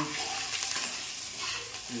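Hot oil sizzling in a stainless steel kadhai as food fries, stirred with a steel spoon.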